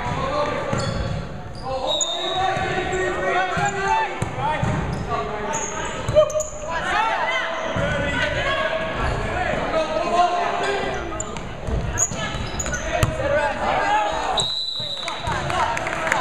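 Volleyball play on a hardwood gym court: voices of players and onlookers calling and talking over one another, with the thuds of the ball being hit and bouncing on the floor, one sharp hit loudest about six seconds in. Everything echoes in the large hall.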